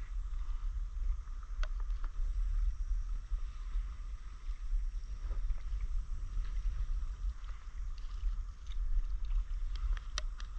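Water sounds and paddle strokes from a stand-up paddleboard moving across calm sea, under a steady low rumble of wind on the microphone, with a few small clicks and splashes.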